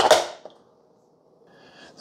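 Keurig K-Express brewer's plastic lid handle being pressed shut with one sharp clack that fades within half a second, its needles piercing the top and bottom of the K-Cup pod.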